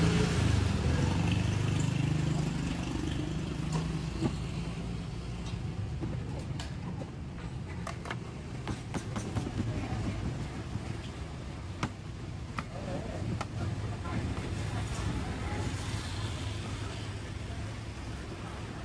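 Street traffic: a vehicle's engine rumbles past in the first few seconds, then fades into steady street noise with occasional sharp taps.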